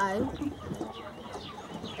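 Domestic chickens clucking in a backyard run, with a boy's voice saying a single letter aloud at the very start.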